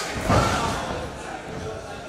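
A single heavy thud of a body hitting the wrestling ring's canvas about a third of a second in, over crowd voices in the hall.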